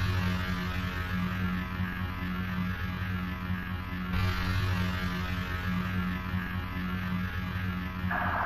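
Steady electrical hum drone with a layer of static hiss, the hiss growing brighter about four seconds in: the opening drone of an industrial music track.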